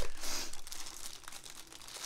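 Clear plastic packaging bag crinkling as it is handled. It is loudest in the first half-second, then settles into softer, scattered rustling.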